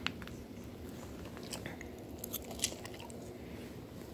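A person chewing food close to the microphone, with a few short sharp clicks and crunches, the loudest a little past halfway, over a low steady hum.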